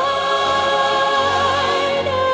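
Singing with instrumental accompaniment: a voice holds one long note with a slight vibrato.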